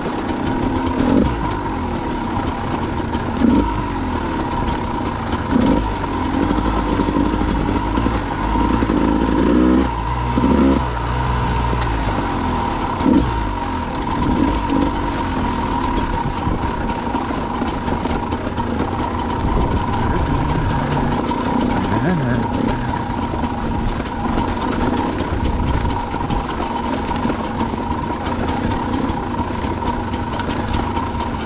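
Two-stroke enduro motorcycle ridden over a rough, stony track, its engine revs rising and falling repeatedly with the throttle, over a steady high tone.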